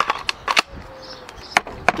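About five sharp clicks and clacks from hard plastic being handled: a cordless drill's battery casing is picked up and set down, and loose battery cells are moved on the table.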